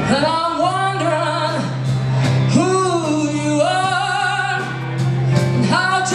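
Live band music: a steady held low note under a lead melody that bends and wavers in pitch.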